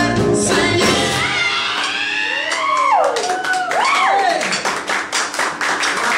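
The end of a live pop-gospel band performance: the band drops away after about a second and a half and the male singer holds a closing vocal run of sliding, bending notes. Audience applause starts building near the end.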